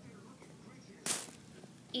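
A sheet of craft felt swished sharply through the air, one quick snap about a second in.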